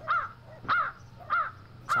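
Crow cawing, one short caw about every 0.6 seconds, four caws in a row.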